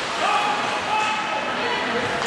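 Ice hockey game in play: shouts and calls from players and onlookers over a steady wash of skates on ice and stick-and-puck knocks, echoing in a large rink.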